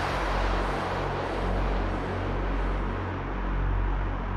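Trance music in a breakdown: a white-noise sweep fading and closing down from the top over held low synth notes, with no drums.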